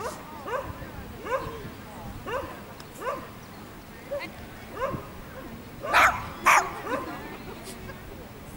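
Small terrier giving two sharp barks half a second apart about six seconds in, with short rising calls every second or so before them.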